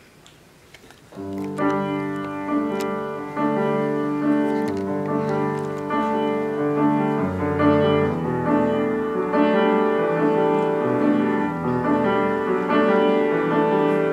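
Solo piano starting about a second in, playing a slow accompaniment of sustained chords with a moving upper line: the instrumental introduction before the vocal enters.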